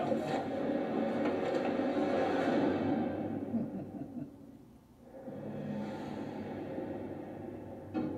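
Eerie background music from a ghost-hunting television programme. It fades away to a low point about five seconds in, then a quieter low drone comes back.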